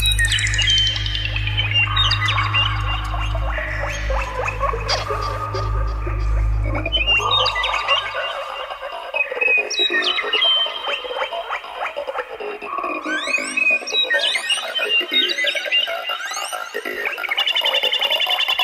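Psytrance: a steady low bass pulse drops out about eight seconds in, leaving a breakdown of chirping, gliding synth sounds.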